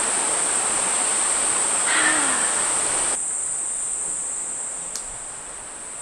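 Steady high-pitched drone of insects, with a rushing noise beneath it that stops abruptly about three seconds in. A short vocal sound comes about two seconds in.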